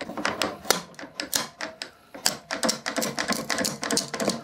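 Quick-release trigger bar clamp, reversed into a spreader, pumped by its trigger handle: a run of sharp clicks in quick succession, with a short lull about two seconds in. The clamp is forcing a glued pine side-grain biscuit joint apart.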